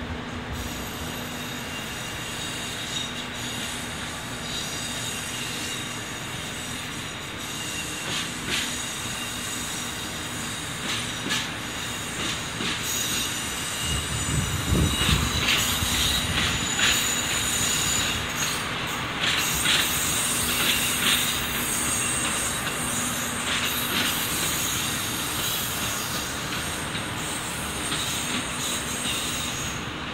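Diesel railcar rolling slowly into a station, its wheels squealing in high, thin tones over the low rumble of the running gear. The squeal is strongest in the second half, and a louder rumble swells up about halfway through.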